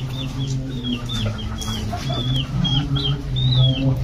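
Chicks peeping: short high calls, about two or three a second, over a steady low hum.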